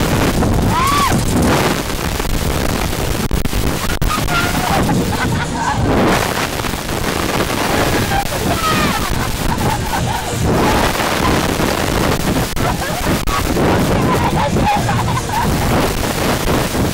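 Wind rushing and buffeting on the onboard microphone of a reverse bungy capsule as it swings through the air, a steady heavy rumble. Riders' screams and laughter break through it several times.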